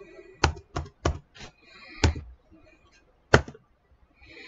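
Computer keyboard keys pressed one at a time: about six separate sharp key clicks at an uneven pace, the loudest a little past three seconds in.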